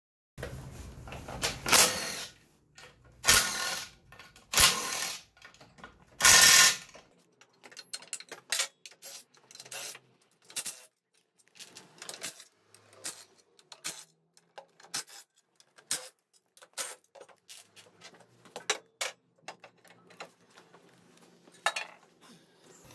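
A cordless driver runs in several short, loud bursts, spinning out the bolts of a scooter's belt-drive cover. These are followed by many light clicks and taps of loosened bolts and the metal cover being handled.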